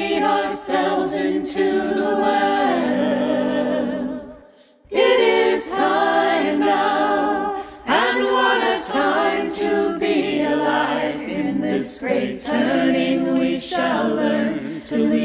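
Unaccompanied choir singing a hymn in harmony, several voices together. There is a short break about four and a half seconds in, then the singing picks up again.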